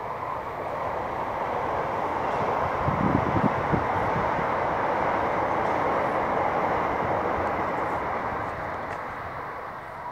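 A passing train heard from a distance, its rushing noise swelling to a peak about halfway through and then fading away. A few low knocks come about three seconds in.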